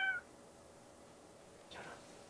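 An orange tabby cat's short meow rising in pitch, cut off just after the start, then faint room tone with a brief soft noise near the end.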